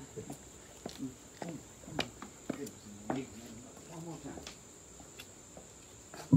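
Insects trilling steadily in a high, continuous band, with scattered faint clicks and brief low murmurs of voices.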